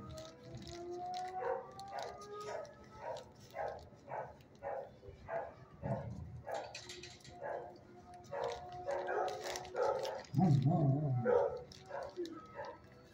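Dogs barking in a shelter kennel in a quick, even series of about three barks a second, with thin whining tones underneath and a few louder, deeper barks about halfway and near the end.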